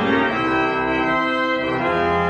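Church organ played from a three-manual console: sustained chords that move from one to the next.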